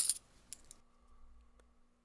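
Hockey trading cards being slid and flicked against each other by hand: a brief rustle at the start and a couple of light clicks, then near quiet.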